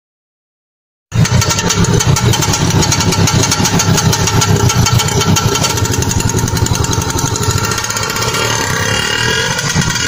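Small engine of an auto rickshaw running steadily with a rapid putter. It cuts in suddenly about a second in.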